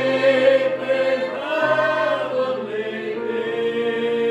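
Small mixed choir singing a hymn in parts over an electronic keyboard. Long held notes, with the chords changing about every second and a half.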